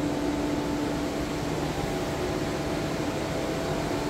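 Steady hum of ventilation machinery: a few constant tones over an even hiss, unchanging throughout.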